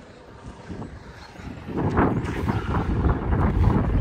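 Wind buffeting the microphone outdoors: a low rushing noise that gets much louder and gustier from about two seconds in.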